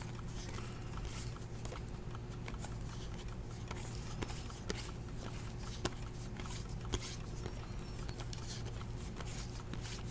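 Glossy 2015 Topps Platinum football cards being flipped one at a time from one stack to another, with soft sliding and a few sharp clicks as cards snap past, over a steady low hum.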